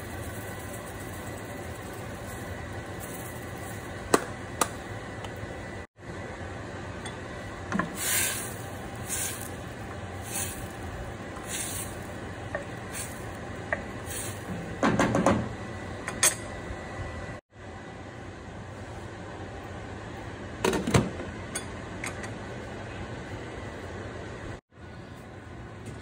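Wooden spoon stirring a pot of stock with diced turnips and onions, scraping and knocking against the stainless steel pot, over a steady background noise; a run of strokes about once a second, then a few louder knocks.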